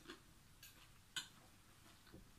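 A metal spoon clinking against a glass bowl as salad is scooped: one sharp clink just over a second in, a fainter tap before it, and otherwise near silence.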